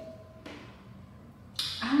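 Quiet room tone with only faint noise during a pause, then a woman starts speaking near the end.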